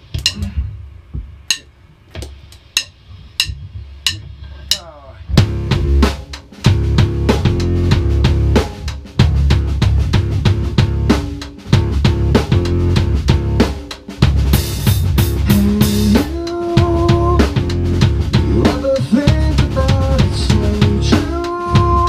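Rock band of drum kit, electric guitar and bass guitar playing through amps. Eight evenly spaced clicks count it off, then the full band comes in together about five seconds in, with a cymbal crash near the middle and held guitar notes over the drums and bass later on.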